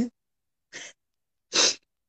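A woman's short, sharp breath noises through the nose or mouth: a faint one just under a second in and a louder, hissy one about a second and a half in.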